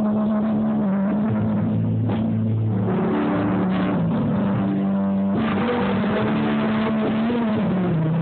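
Live band music from electric guitar, acoustic guitar and keyboard, an instrumental stretch built on long held notes; the sound gets fuller and brighter about five seconds in.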